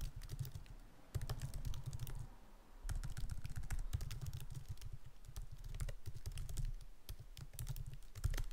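Typing on a computer keyboard: quick runs of keystrokes, with a short pause a little over two seconds in.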